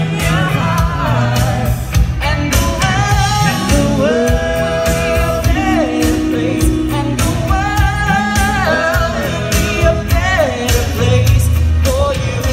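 A vocal group singing a Christmas song in harmony, several voices holding long notes together over a steady beat and bass line.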